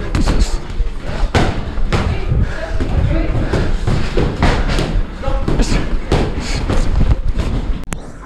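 Boxing gloves thudding in a rapid sparring exchange, close to the hat-mounted camera: a quick run of sharp punches and blocks, heard over background voices in a busy gym.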